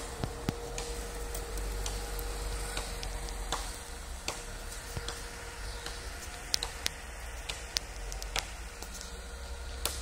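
UAZ off-roader's engine heard as a faint, steady low rumble, with scattered sharp clicks and snaps throughout.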